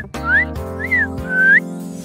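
A person whistling three short notes, each gliding in pitch, the last one rising, over light background music.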